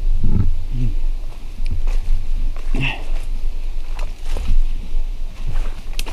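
Footsteps and rustling through forest undergrowth, with irregular small snaps and crackles over a constant low rumble on the microphone.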